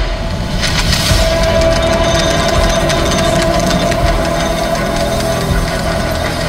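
Movie trailer soundtrack: a sustained, rumbling, engine-like drone with a steady held tone above it, no dialogue.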